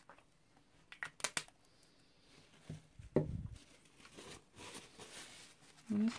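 Paper towel rustling and crinkling as it is handled over the crumpled scrap paper. A few sharp clicks come about a second in and a dull thump about three seconds in.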